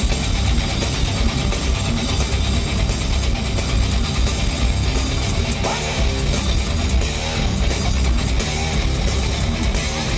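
A metal band playing live through a festival PA, with heavy distorted electric guitars over bass and drums, loud and continuous. It is heard from within the crowd on a compact camera's microphone, which makes it dense and harsh.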